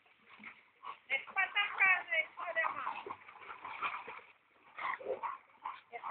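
A dog whining and yelping in a run of short, high-pitched cries whose pitch bends up and down.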